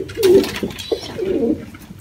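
Domestic pigeon cooing: low rolling coos, a louder one in the first half second and a softer one after the middle.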